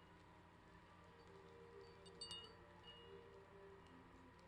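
Near silence: quiet room tone with a few faint, high chime-like pings, the clearest a little past the middle.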